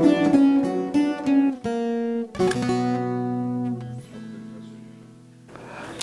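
Bağlama (Turkish long-necked saz) played solo: a short phrase of plucked notes, the last one left ringing and fading away near the end.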